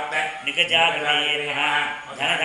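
A man's voice chanting Sanskrit mantras in a steady recitation: a puja archana, a litany of the deity's names, each followed by 'namah'.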